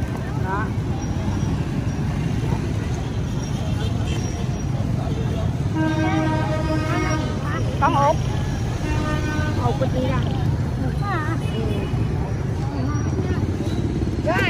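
Steady street traffic rumble with a vehicle horn sounding twice, each held about a second, around six and nine seconds in.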